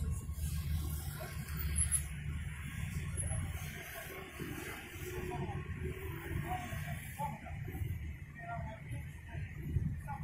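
Faint, indistinct voices of people talking some distance away, over a steady low rumble of traffic or an idling vehicle.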